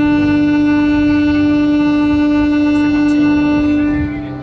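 Ship's horn sounding one long, steady, loud blast, as a vessel's signal on leaving its berth.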